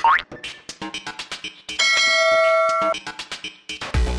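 Electronic intro music with a fast clicking beat, a rising swoosh at the start, and about two seconds in a bright bell-like ding ringing for about a second: the sound effect of a subscribe-button and notification-bell animation.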